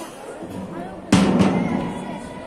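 Two loud booming thumps about a second in, the second close behind the first, with a short low ring after them over faint crowd chatter.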